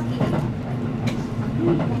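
313 series electric train running along the track, heard from the driver's cab: a steady low rumble with a steady tone, and two short clicks of the wheels over the rails.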